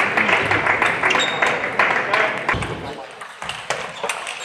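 Table tennis ball clicking off the bats and the table during a rally, over crowd noise and voices in the hall. About three seconds in, the crowd noise drops and a few separate ball clicks remain.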